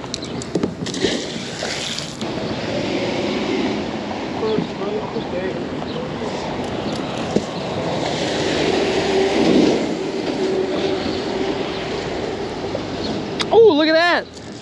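Steady rushing noise with a low rumble while a magnet-fishing magnet on a wet rope is thrown into the river and hauled back, water spraying off the line. A brighter hiss stops abruptly about two seconds in.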